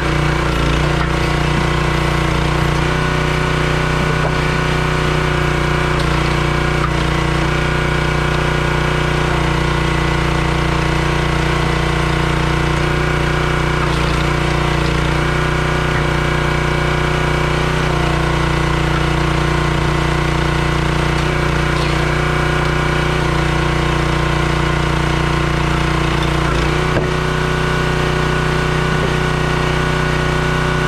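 Small gas engine of a Crimson 27-ton log splitter running steadily at constant speed while the splitter is worked, its pitch shifting slightly a few times.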